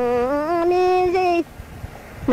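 A voice singing long held notes in a Hmong-language song: one note slides up to a higher one, which is held and then stops about three-quarters of the way through.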